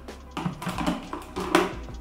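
Background music with a few light clicks and taps from handling the multicooker's lid at its steam vent.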